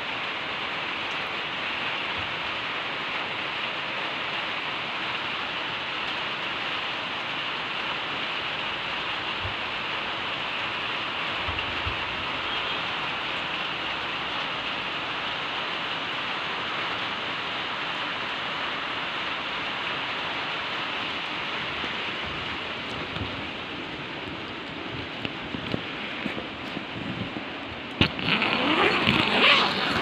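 Steady rain falling, a continuous even hiss. Near the end come a couple of seconds of louder knocks and rustling as the phone is handled.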